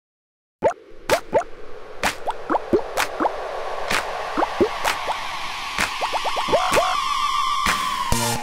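Cartoon bubble-pop sound effects in a music intro: after a moment of silence, many short upward-gliding blips and sharp clicks play over a held musical tone and a hiss that slowly swells.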